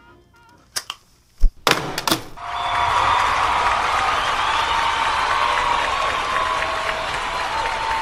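A large audience applauding: a few sharp knocks, then steady, even clapping from about two and a half seconds in.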